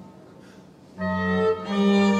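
Violin and church organ music: a held chord dies away in the church's echo to a brief near-quiet, then about a second in the organ bass and violin come back in with a new phrase, the melody moving between notes near the end.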